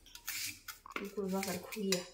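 A vegetable being sliced by hand with a curved knife, the slices dropping onto a steel plate with light metallic clinks. A woman's voice comes in about halfway through.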